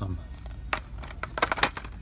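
Plastic blister-card toy package clicking and rattling as it is handled and hung back on a metal pegboard hook: one click, then a quick cluster of sharp clicks a little over a second in.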